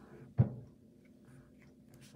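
A single short knock about half a second in, as fingers work loose a small plastic part of a toy's mist chamber. After it comes quiet handling over a faint, steady low hum.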